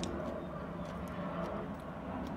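A few faint clicks from fingers and thread handling a metal door lock and latch, over a steady low background hum.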